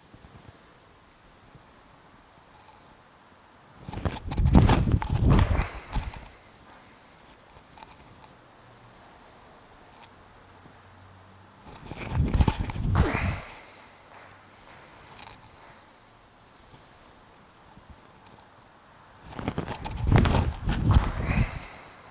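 Three squat jumps, each a short cluster of thuds from a man's sneakers taking off from and landing on a matted gym floor, spaced about eight seconds apart with quiet room tone between.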